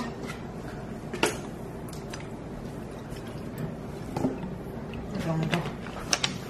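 Lemon-lime soda poured in a thin stream from a bottle into a glass of makgeolli, with a couple of sharp light clicks, one at the start and one about a second in. A short hum of voice comes near the end.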